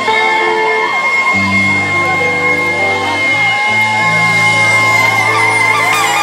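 Live reggae band playing, held bass notes moving every second or so under a steady high sustained tone, with the crowd whooping and yelling over the music.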